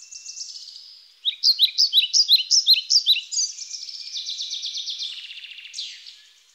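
A songbird singing a long, varied, high-pitched song: quick trills, a loud run of repeated sweeping notes about three a second from just after one second in, then more rapid trills.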